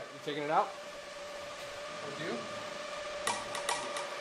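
Quiet workshop room tone with a faint steady hum. A short stretch of voice comes about half a second in, and a few light clicks come near the end.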